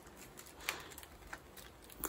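Faint rustling and a few soft clicks of stiff ivy weavers and spokes being bent and pulled through by hand while weaving a basket rim.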